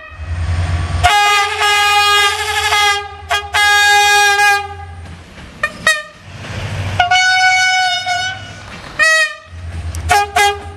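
Train horns sounded in a series of blasts. Two long, held chord blasts come in the first half, then short toots, another long blast about seven seconds in, and quick toots near the end, all over the low rumble of the approaching train.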